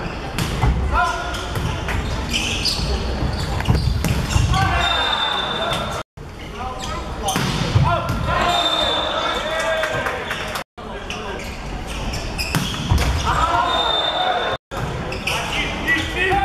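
Men's volleyball play in a large echoing sports hall: the ball struck on serves and attacks, players shouting, and a short high whistle blast three times. The sound drops out abruptly three times where rallies are cut together.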